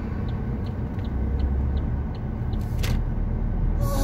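Low, steady road and engine rumble heard from inside a car driving through town, with a light tick repeating about three times a second. Near the end there is a brief rush of noise, and music comes in just before the end.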